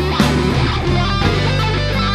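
A PRS Custom 22 electric guitar played through an Engl Powerball tube amp head and Engl 4x12 cabinet, improvising a blues solo line of changing notes.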